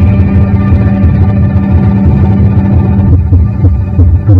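Live experimental electronic improvisation: a sustained, layered drone of steady tones over a heavy, fluctuating low bass, with the upper tones thinning out about three seconds in.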